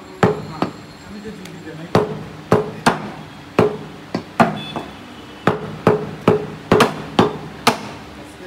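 Meat cleavers chopping beef on wooden chopping blocks: sharp, uneven chops, about two a second, from two butchers working at once.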